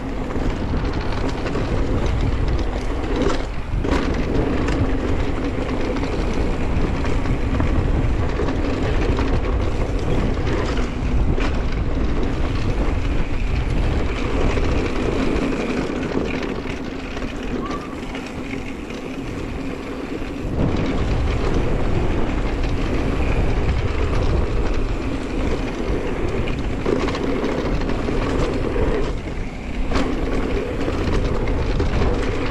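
Wind rushing over an action camera's microphone as a mountain bike rolls fast down a dirt trail, mixed with the rolling noise and occasional knocks of knobby tyres on hard-packed dirt. It eases for a few seconds past the middle, then comes back up.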